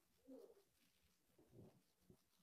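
Near silence: room tone, with two faint brief low sounds, one about a third of a second in and one near the end.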